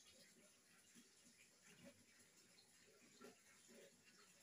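Near silence: quiet room tone with a few faint, brief soft sounds.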